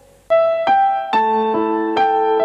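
Piano-voiced keyboard playing the slow introduction of a song's backing track, starting after a brief silence, with a new note about every half second.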